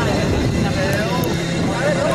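A man's commentary voice over a steady bed of background noise, with a low steady hum coming in in the second half; no distinct other sound stands out.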